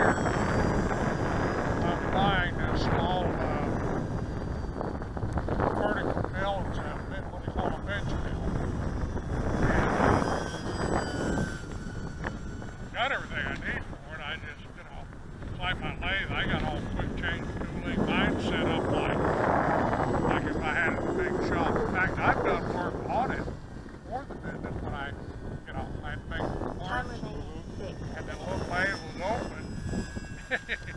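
Electric E-flite P-51 Mustang ASX radio-control plane flying past, its motor and propeller a faint whine that glides slowly up and down in pitch, heard under wind on the microphone.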